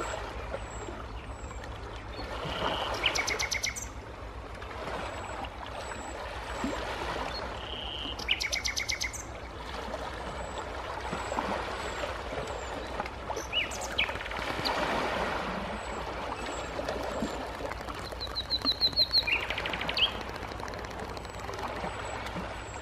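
Small birds chirping, with short high calls repeating about once a second and a few quick rattling trills, over gentle sea waves washing onto shoreline rocks in soft swells every few seconds.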